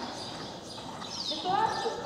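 Hoofbeats of an Akhal-Teke horse cantering on the sand footing of a riding arena.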